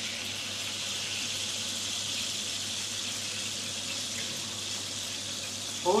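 Hot oil sizzling steadily in a frying pan on a gas burner.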